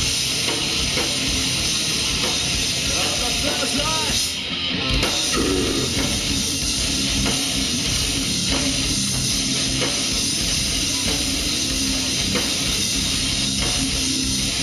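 Live metalcore band playing at full volume: distorted electric guitars, bass and fast drum kit. There is a brief dip in the sound about four and a half seconds in, then the band carries on.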